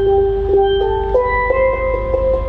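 Steel pan (steel drum) played with mallets: a slow melody of clear, ringing single notes, each held about half a second before the next.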